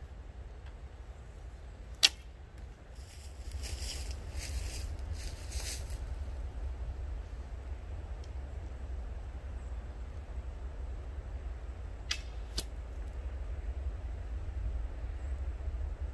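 Powhatan-style wooden longbow being shot: a sharp, loud snap of the released string about two seconds in, and later two quieter clicks about half a second apart.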